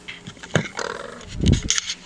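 A hidden camera being grabbed and picked up: handling noise on the microphone, rustling, with two dull bumps, the louder one about a second and a half in.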